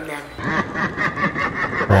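A boy's scheming, snickering laugh, a quick run of raspy chuckles.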